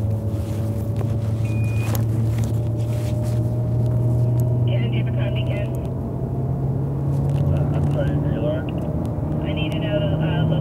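Car engine heard from inside the cabin, a steady drone whose pitch slowly rises as the car gathers speed. Faint voices come in about halfway through and again near the end.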